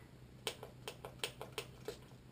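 About seven faint, quick clicks and taps, a few each second, starting about half a second in, from a small plastic-and-glass body mist spray bottle being handled in the fingers.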